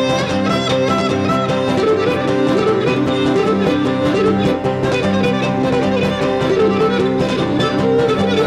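Cretan lyra playing a malevyziotis dance tune, with laouto and guitar strumming the accompaniment.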